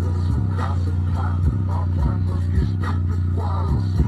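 Bass-heavy music played loud through a JBL Charge 2+ portable Bluetooth speaker: a deep, sustained bass line with a sharp attack and a short downward pitch drop about twice a second.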